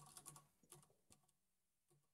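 Faint computer-keyboard typing: a few soft key clicks in the first second, then near silence.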